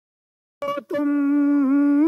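Silence, then a little over half a second in a man begins singing unaccompanied, holding one long steady note on the word "tum".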